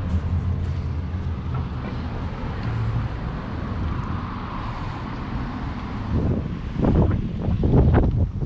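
Road traffic going by with a steady low rumble, and gusts of wind buffeting the microphone near the end.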